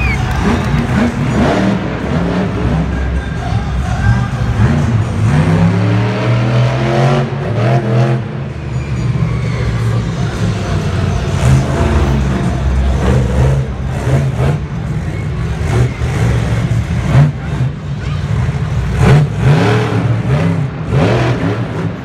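Monster truck's supercharged V8 engine revving hard and accelerating. Its pitch climbs steeply about six seconds in and again near the end as it runs up to a jump.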